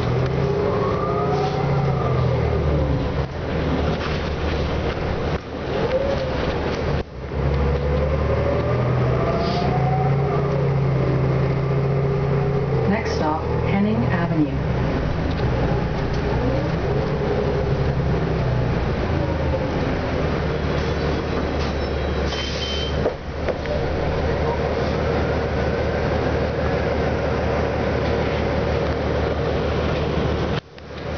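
Inside the cabin of a TTC Orion VII NG diesel bus with an EPA 2010 engine, under way: the diesel engine and drivetrain run with a steady low hum, and a whine rises and falls several times as the bus speeds up and slows in traffic.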